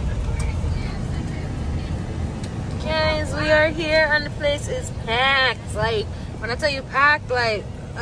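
Steady low rumble of a vehicle driving, heard from inside its cabin, with voices talking over it from about three seconds in.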